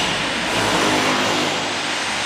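A motor-driven machine running loudly and steadily, a dense rushing noise with a faint low hum under it.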